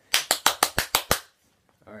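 A quick burst of about seven hand claps, about seven a second, lasting about a second.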